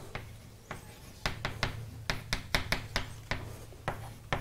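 Chalk writing on a blackboard: a quick, irregular run of light, sharp taps and clicks as the chalk strikes and lifts from the board, starting about a second in.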